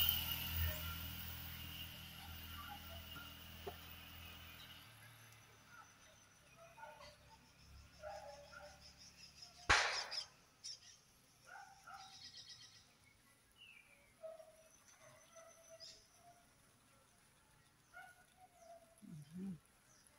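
Scattered short bird chirps and calls over a quiet background. There is one sharp click about halfway through, and a low rumble fades away over the first few seconds.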